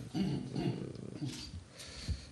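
A man's quiet, indistinct voice, fainter than his speech, in short broken sounds that thin out towards the end.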